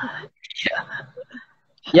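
Soft, breathy laughter and murmured words from people on a video call, ending in a spoken "ya".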